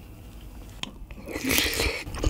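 Close-miked bite into a large piece of soft braised kimchi: a short, wet, noisy mouth sound in the second half, after a quieter start with a single small click.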